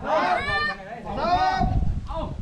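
People shouting two drawn-out calls, about a second apart, their pitch rising and falling, as a crew heaves together to carry a wooden stilt house on poles.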